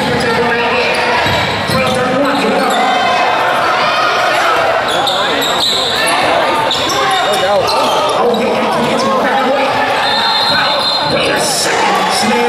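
A basketball bouncing on a hardwood gym floor among indistinct voices of players and spectators, echoing in a large hall.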